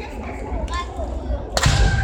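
Sudden sharp crack of a bamboo shinai striking in a kendo bout about one and a half seconds in, with noisy sound carrying on after it.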